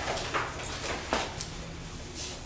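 A few brief soft rustles and taps of paper, typical of pages being turned to find a passage.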